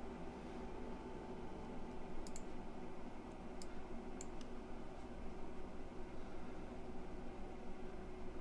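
A few faint computer mouse clicks, two close together and then three more spread over the next two seconds, over a steady low room hum.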